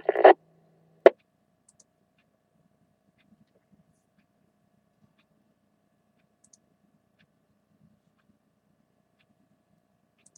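Amateur radio receiver's squelch closing with a short burst of noise as the repeater's carrier drops at the end of a transmission, cutting off a low steady hum. After it comes near silence with a few faint ticks.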